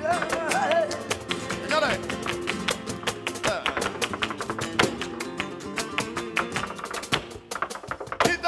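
Live flamenco alegrías: Spanish guitars playing under sharp rhythmic hand-clapping (palmas), with a male cante voice wavering through a sung phrase in the first two seconds.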